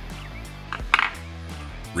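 Background music, with a short cluster of sharp metallic clicks about a second in from a flathead screwdriver working the detented adjustment screw of an AR-15 adjustable gas block.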